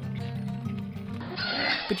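Background music with held low notes. About a second and a half in, a noisy din of pigs comes in, with high squeals.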